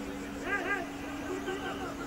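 Two short shouts from players on the field, each rising and falling in pitch, about half a second in, followed by more calling. A steady low hum runs underneath.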